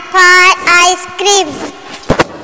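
A child's voice singing three short, loud held notes with a slight waver in pitch.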